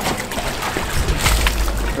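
Water sloshing and trickling from a plastic storage-bin fish trap as it is hauled out of shallow water, with scattered small knocks and a low rumble in the second half.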